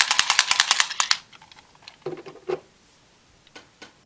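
Hard plastic toy Full Bottle (Kamen Rider Build Cake Full Bottle) rattling rapidly as it is shaken by hand, a dozen or more clicks a second, stopping about a second in. A few faint knocks follow.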